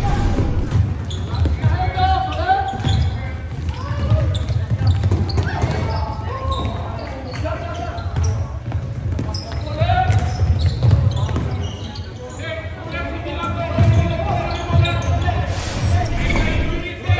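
Live sound of a youth floorball game in an echoing sports hall: players' indistinct shouts and calls over a steady run of low thuds and rumble from feet and play on the court floor.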